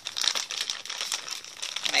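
Thin plastic bag crinkling and rustling as it is gripped and tugged open by hand.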